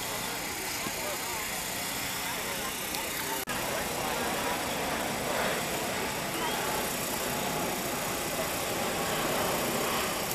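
Indistinct chatter from spectators over a steady outdoor background noise, with a brief dropout in the audio about three and a half seconds in.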